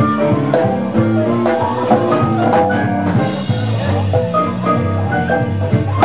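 Live band playing an instrumental passage: quick runs of piano notes over a drum kit beat.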